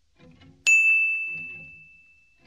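A single bell ding, struck once about two-thirds of a second in and ringing out on one high clear tone that fades away over the next second and a half. It is the kind of notification-bell sound effect that goes with an animated subscribe button.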